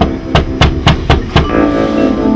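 A fist knocking on a wooden door: five quick, evenly spaced knocks about four a second, stopping about a second and a half in. Background music plays underneath.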